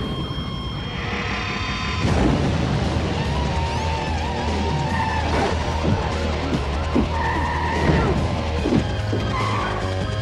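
Film-trailer soundtrack: music with a steady low bass under car engines and tyres squealing several times in a car chase, the squeals coming from about the middle onward.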